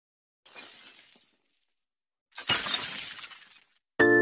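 Glass-shattering sound effect from an animated intro: a quieter crash about half a second in, then a much louder one about two and a half seconds in, each trailing off over about a second.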